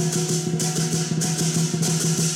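Chinese percussion accompaniment in the lion-dance style: a drum beaten in quick strokes, with cymbal clashes about twice a second over a steady ringing tone.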